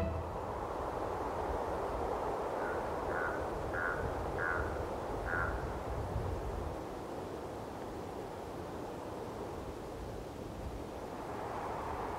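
Rural outdoor ambience with a steady low rumble, and a bird calling five times in quick succession, about three to five seconds in.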